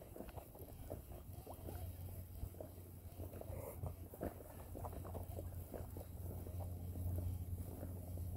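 Shimano SLX 150A baitcasting reel being cranked on a retrieve, faint small clicks and rustles of the handle and line, over a steady low hum.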